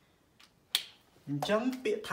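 One sharp plastic click, a whiteboard marker's cap snapped on, with a fainter click just before it. A man starts speaking near the end.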